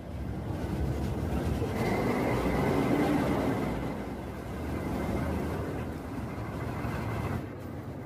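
City bus running along the terminal's bus lane, its engine and tyre noise swelling about two seconds in with a faint steady high whine over it, then dropping off abruptly near the end.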